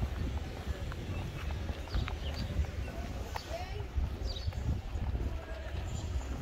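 Steady low rumble of movement and wind on the microphone, with irregular clicks and knocks throughout and faint voices in the background.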